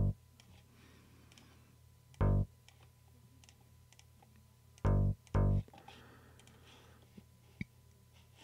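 Single short bass-synth notes from Studio One's DX Bass preset, each auditioned as a note is placed or moved in the piano roll. There are four notes, the last two about half a second apart, with faint mouse clicks in between.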